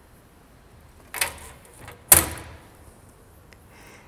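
Two knocks from the lid of a glass terrarium being slid and shut, about a second apart, the second louder with a short ring.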